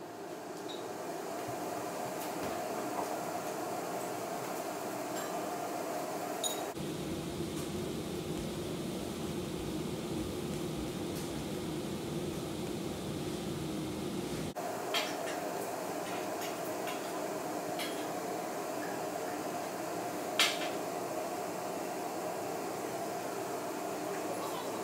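Induction hob running two cooking zones at full power: a steady fan whir with an electrical hum, rising over the first couple of seconds and turning deeper for several seconds in the middle. A few faint ticks and one sharper click about 20 seconds in.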